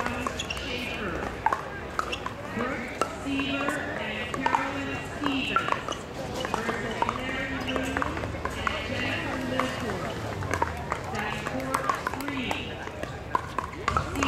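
Sharp plastic pops of pickleball paddles hitting balls, coming at irregular intervals throughout, over a background of people's voices.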